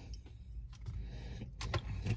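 Low, steady rumble inside a car cabin, with a few faint clicks near the end.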